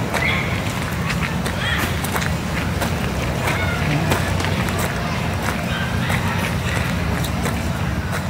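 Steady low rumble of outdoor background noise, with faint distant voices and a few soft clicks of footsteps on a dirt trail.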